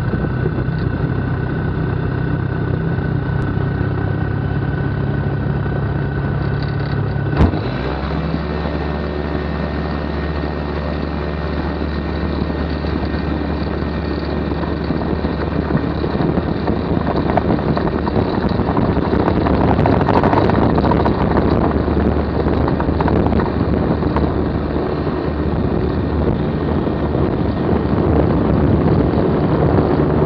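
Ultralight aircraft's propeller engine running steadily; about seven seconds in its note drops with a click. From about sixteen seconds on, wind and engine noise grow louder as the plane gathers speed over the grass.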